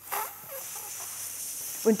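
Air hissing steadily out through the neck of an inflated party balloon as it is let down slowly, starting abruptly.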